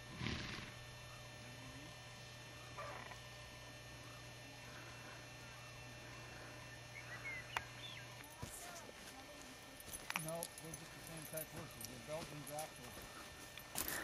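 Quiet outdoor ambience. A faint low steady hum stops about eight seconds in, and in the second half there are a few faint, distant, short voice-like calls.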